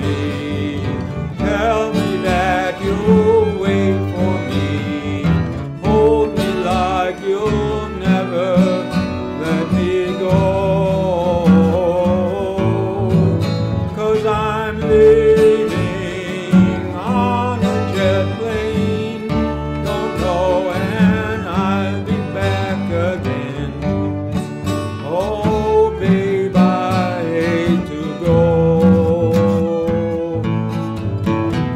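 Small acoustic string band playing an instrumental break: fiddles carry a wavering melody over strummed acoustic guitar and plucked upright bass.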